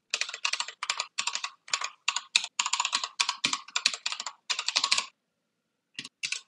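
Computer keyboard typing: a quick, steady run of keystrokes that stops about a second before the end.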